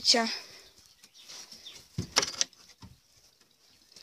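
A short clatter of two or three sharp knocks on wood about two seconds in, from handling around a wooden rabbit hutch, after a last spoken word at the very start.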